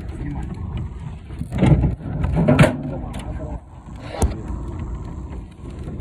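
Phone being handled and passed from hand to hand: rubbing and bumping on the microphone over a steady low rumble, with one sharp knock about four seconds in.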